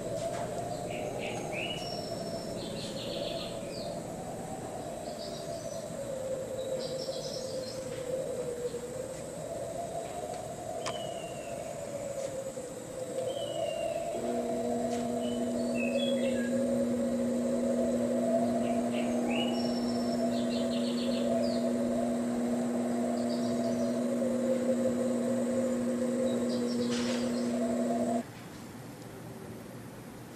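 Recorded nature ambience from a museum diorama's playback: scattered bird chirps over a steady, wavering drone. About halfway through, a steady low hum joins in, and the sound cuts off suddenly near the end.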